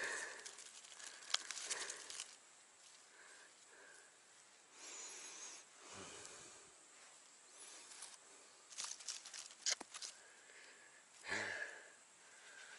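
Faint rustling and crackling of dry leaf litter, pine needles and twigs disturbed by a gloved hand, with a few sharp clicks of twigs.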